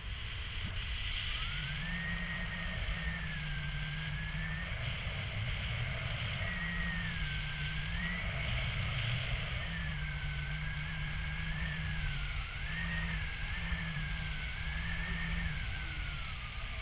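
Wind rushing over the camera microphone in paraglider flight, a steady low rumble, with a thin whistling tone that wavers slowly up and down through most of it.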